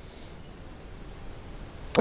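Quiet room tone: a faint, steady hum and hiss, with no distinct event.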